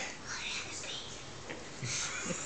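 A faint, whispery voice.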